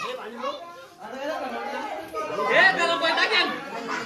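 Several people chattering and talking over one another. The voices grow louder and more crowded in the second half.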